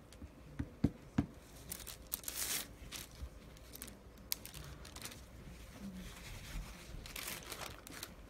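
Scraper dragged through cold wax and oil paint on the painting surface: a few light knocks at first, then scratchy scraping strokes, the longest about two seconds in and another near the end.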